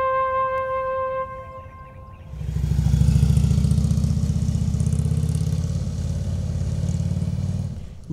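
A trumpet holds a long note that fades out about a second in. About two seconds later a touring motorcycle's engine comes in loudly and runs as the bike rides away, lasting until near the end.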